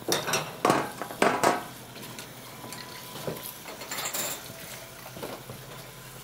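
Baking trays and dishes clattering as they are handled and set down. There are several sharp clangs in the first second and a half, then quieter scattered clinks.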